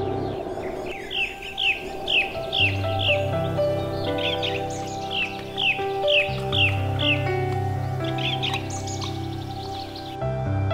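A songbird giving short falling chirps, about two a second, in two runs with a brief flurry near the end, over soft, sustained background music with a low bass.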